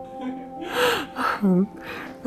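A woman's breathy vocal sounds: sharp audible breaths with short half-voiced sounds between them. Underneath, a held background music drone fades out near the start.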